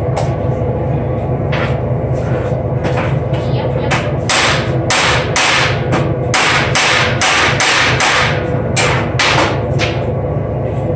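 Hand hammer striking metal at a workbench, about fifteen blows. The first few are spaced out, and from about four seconds in they come quicker, around two a second. A steady low hum runs underneath.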